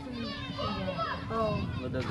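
Boys' voices talking, with a steady low hum underneath.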